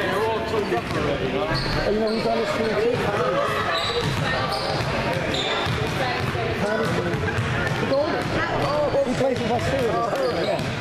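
Basketballs bouncing on a hardwood gym floor, many dribbles in an uneven patter, over the steady chatter of many spectators' voices in a large gym.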